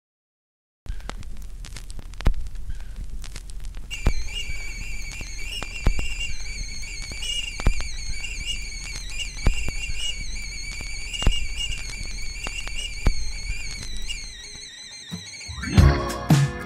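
Intro to the song: faint crackling and clicks, joined about four seconds in by a single high, wavering whistle-like tone held for about ten seconds. The full band comes in at the very end.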